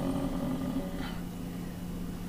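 Room tone with a steady low hum.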